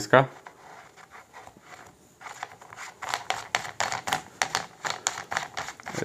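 Hand working a screwed part at the muzzle end of a Reximex Throne Gen2 air rifle's barrel shroud: rapid, irregular small clicks and scrapes starting about two seconds in, several a second.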